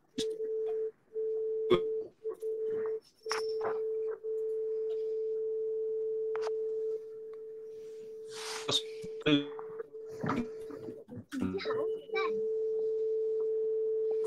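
A steady electronic tone at one pitch, cut by several short dropouts and clicks in the first few seconds, continuing to the end.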